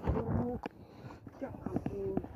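Men's voices talking and calling, softer and farther from the microphone than the main speaker, with a few light clicks.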